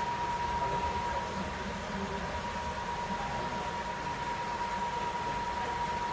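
Steady background hiss with a constant high-pitched whine held on one note throughout.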